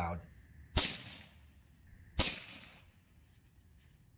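Two shots from a Diana XR200 .22 PCP air rifle, about a second and a half apart, each a sharp crack with a short fading tail. They are a little bit loud, reading 93 and 103 dB on a sound meter.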